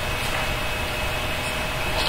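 Steady background hum and hiss of room noise with a faint steady tone, during a short pause between spoken phrases.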